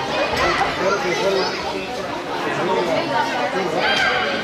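Overlapping voices of young soccer players and onlookers calling out and chattering in an indoor arena, with a sharp knock near the end.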